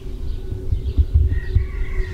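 Outdoor ambience: an uneven low rumble of wind on the microphone, with a few stronger gusts about a second in and a faint higher call in the second half.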